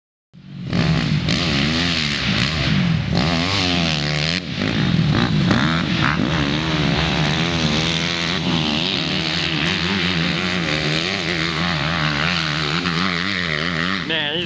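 Motocross dirt bike engine being ridden hard, its revs rising and falling over and over as the throttle is worked around the track. The sound starts about half a second in and runs loudly throughout.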